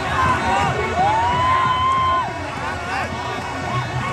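Crowd of spectators shouting and cheering over a steady hubbub, with one long, drawn-out shout starting about a second in and lasting about a second.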